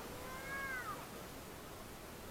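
One short high-pitched call, lasting under a second and falling in pitch at its end, over faint outdoor background noise.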